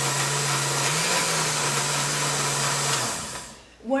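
Countertop blender running at full speed, blending ice cream, milk and blueberries into a milkshake: a steady whirring motor with a low hum, which shifts up slightly about a second in. It is switched off about three seconds in and winds down.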